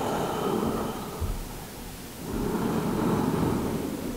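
A woman breathing slowly and audibly in a yoga stretch: two long, smooth breaths, the second starting about two seconds in, picked up close by a microphone worn on her body.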